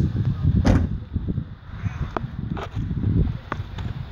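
Wind and handling noise on a phone microphone carried outdoors, with a sharp click about three-quarters of a second in and a few lighter clicks later.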